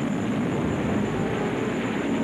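Propeller-driven aircraft engine running steadily, heard as an even low rumble.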